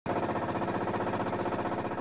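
Small boat engine running steadily with a rapid, even putter and a constant pitch.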